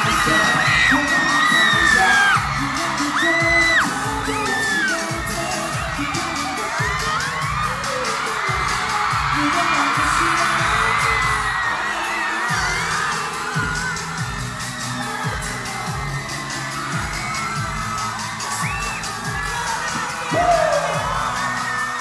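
Live pop music heard from inside a concert crowd, with a singer over a steady thumping beat. High screams and whoops from the fans run over it throughout.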